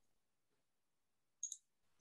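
Near silence over a remote video call, broken about one and a half seconds in by a short, high double click.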